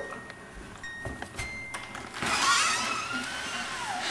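A glass front door being opened: a few light clicks of the latch and steps, then a long creak that slides down in pitch over the second half.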